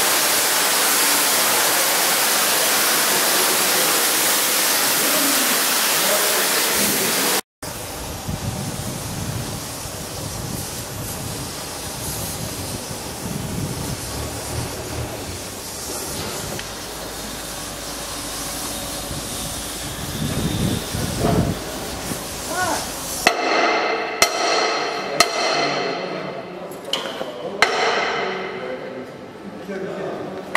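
Repair-shop noise. A loud, steady hiss runs for about the first seven seconds and cuts off suddenly. Then comes a low, uneven rumble with voices in the background. In the last seconds there is a run of sharp metallic knocks and clanks that ring briefly.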